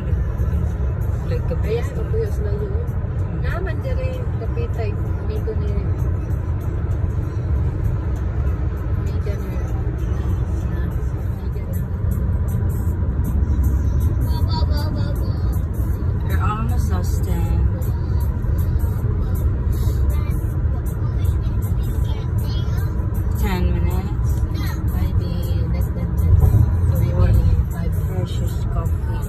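Steady low road and engine rumble inside the cabin of a car moving at highway speed, with faint voices at times.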